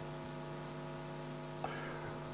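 Steady electrical mains hum: a low buzz with a stack of even overtones over faint hiss, with one small click about one and a half seconds in.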